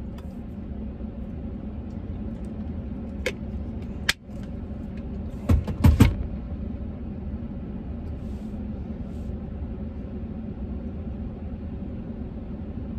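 Steady low hum inside a parked truck's cab with the engine running, broken by a few sharp clicks about three and four seconds in and a louder cluster of knocks between about five and a half and six seconds in, as things are handled in the cab.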